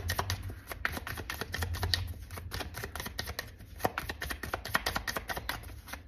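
A tarot deck being shuffled by hand: a quick, irregular run of soft card clicks and slaps over a low steady hum.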